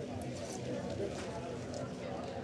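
A low murmur of background voices in a café, with a few faint clicks of metal spoons against dishes.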